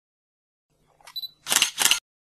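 Camera shutter sound effect: a short high beep about a second in, then two shutter clicks in quick succession, cutting off sharply.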